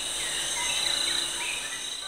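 Insects calling: a steady high-pitched trill, with a few fainter gliding calls below it.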